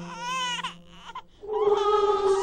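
Eerie horror soundtrack: a short, high, wavering cry-like wail, then a brief dip. About one and a half seconds in, a sustained choir-like chord swells in.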